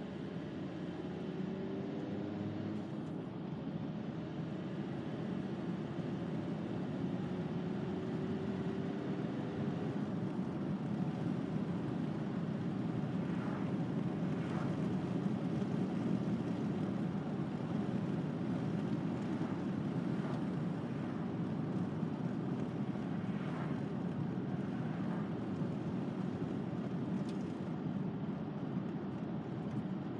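Steady road and engine noise inside the cabin of a VW T5 Transporter van on the move. It grows a little louder through the first half, and a faint whine rises slowly in pitch over the first ten seconds or so.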